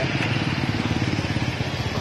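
Steady low rumble of wind buffeting the microphone of a hand-held camera while riding a bicycle, mixed with road noise.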